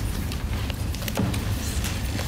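Room noise of a meeting hall: a steady low rumble with a few scattered light knocks and rustles as people walk to the front table and settle in.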